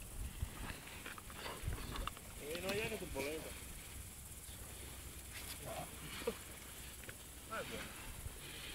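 Faint, distant voices over a low steady rumble. One voice stands out for about a second, around two and a half seconds in.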